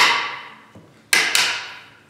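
A hammer striking a chisel held against the end of an ebony fretboard, chopping away the waste wood beyond the nut slot. The ring of one blow fades at the start, and a single sharp strike lands about a second in, with a brief metallic ring.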